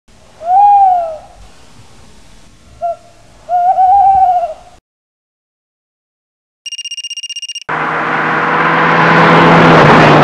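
Sound effects: two hoot-like calls, the second longer and wavering, then a short silence, about a second of rapid electronic beeping, and then a loud rushing roar with a low hum that builds near the end.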